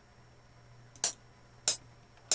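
FL Studio's metronome clicking the count-in before recording starts: two short, sharp clicks about two-thirds of a second apart, the first about a second in.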